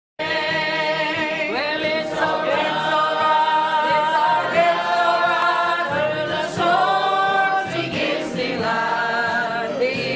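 A church choir singing together, holding long notes, cutting in right at the start.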